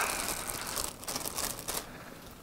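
Thin clear plastic bag crinkling as a camera viewfinder is slid out of it, the rustle fading near the end.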